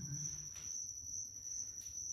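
A cricket trilling steadily, one unbroken high-pitched note. A short low voice sound is heard in the first half second.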